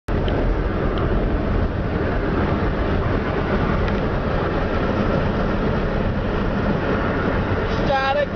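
Steady rushing road and wind noise of a moving car, heard from inside the cabin with the side window open.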